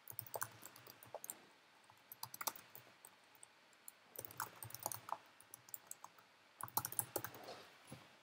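Computer keyboard typing, faint, in short bursts of keystrokes with pauses between them.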